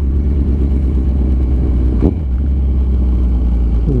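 Kawasaki Z1000 R inline-four motorcycle cruising at a steady speed, its engine note mixed with a deep wind rumble on the microphone. A single sharp click sounds about two seconds in.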